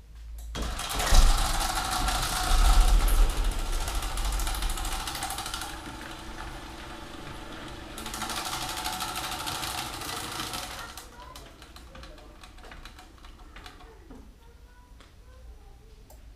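Somfy Dexxo Pro chain-drive garage door opener running as it opens a large up-and-over garage door. The motor and the moving door start about half a second in, are loudest over the first few seconds, and fade out after about eleven seconds as the door finishes opening.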